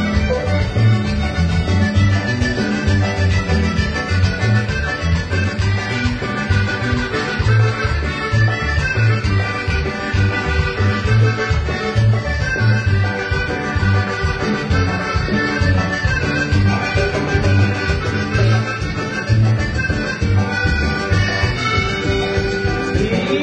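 Latin dance music with a steady, pulsing bass beat playing continuously.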